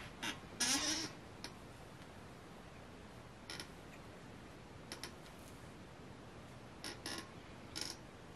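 Faint, brief rustles and clicks, a handful spaced a second or two apart, as hands lift and shift two-strand twisted hair; a short creak-like sound about a second in.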